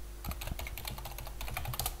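Computer keyboard typing: a quick run of about a dozen key clicks, beginning a moment in and stopping just before speech resumes, as a single word is typed.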